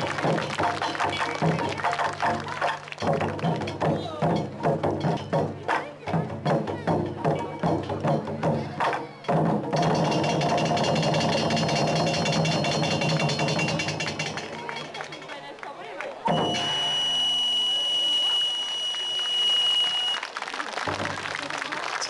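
Taiko drums beaten in a quick, regular rhythm with music, closing a taiko performance. After about ten seconds the strokes give way to a sustained musical passage. About sixteen seconds in a sudden louder sound carries a steady high tone for about four seconds.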